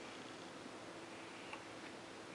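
Quiet room tone with a faint steady hum and a couple of faint, light ticks in the second half.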